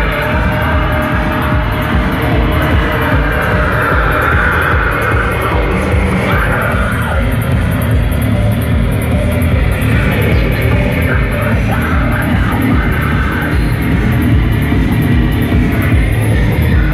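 Live band playing loud electronic rock: a steady driving beat under electric guitar and synthesizer.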